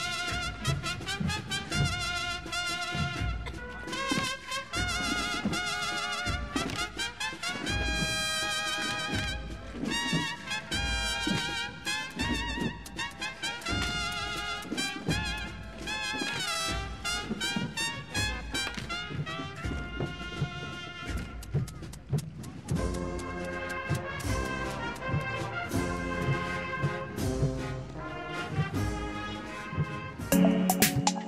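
Bugle-and-drum band (banda de cornetas y tambores) playing a processional march: bugles carry the melody with a wavering vibrato over a steady drum beat.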